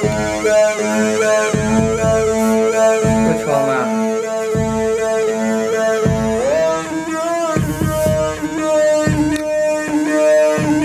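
Verbos Complex Oscillator modules in a modular synthesizer sounding several sustained pitched tones together, with wavering upper overtones and a low pulse about every one and a half seconds. The pitches step and glide upward a few seconds in and again past the middle as the knobs are turned.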